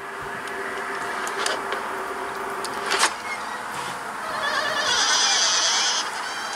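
Soundtrack of a horror skit playing through a phone's speaker: a steady hum with a single sharp click about three seconds in, and a hiss that grows louder near the end.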